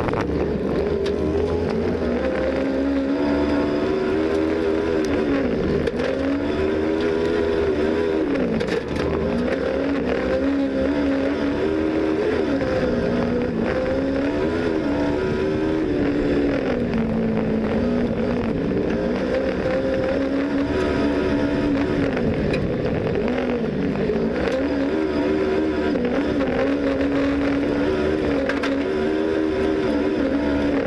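Kart cross's Kawasaki ER-6 parallel-twin engine heard from onboard, held high under race load, its pitch dipping and climbing back several times as the driver lifts off and accelerates again.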